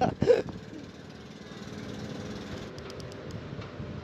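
A short vocal exclamation at the start, then a steady low background hum, like distant engines, with a few faint ticks near the end.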